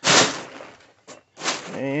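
Plastic tarp rustling as it is pulled off in a quick sweep: a loud rush right at the start that fades over about half a second, and a second rush about a second and a half in.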